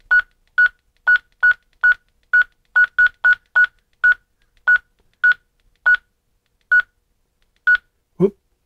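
Key beeps of a Retevis RB27B GMRS handheld radio: about sixteen short, identical beeps, roughly two a second at first and slowing near the end, one for each press of the down-arrow key as it steps through the transmit CTCSS tone settings.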